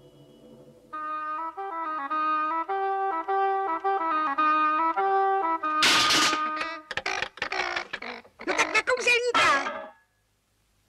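A reedy wind instrument plays a slow snake-charmer's tune of held, wavering notes for about five seconds. About six seconds in, a loud, noisy burst cuts in, followed by a cartoon character's wordless vocal sounds.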